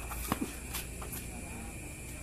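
Faint background sound with a steady low hum and distant murmuring voices. A few light knocks cut through, the sharpest about a third of a second in.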